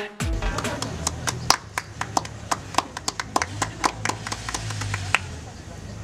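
Music stops abruptly just after the start. Then come irregular sharp clicks, a few a second and uneven in strength, over a low steady hum.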